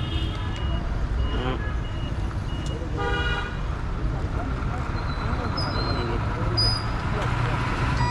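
Road traffic with a steady low engine rumble, and a vehicle horn sounding once, briefly, about three seconds in.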